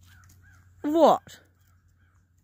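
A woman's voice speaking a single short word with a falling pitch about a second in, typical of her repeated "What?"; otherwise only faint background.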